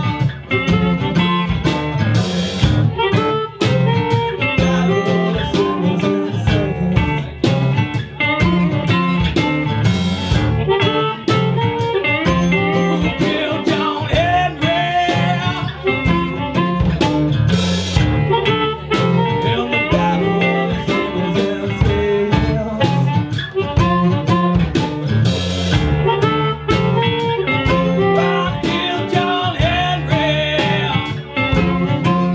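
Live blues-rock band playing an instrumental passage: electric guitars and an acoustic guitar over a drum kit keeping a steady beat.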